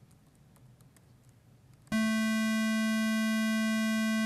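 A Web Audio API oscillator playing a 220 Hz square wave through the room's speakers. It starts abruptly about halfway in as one steady tone with many overtones. A few faint key clicks come before it.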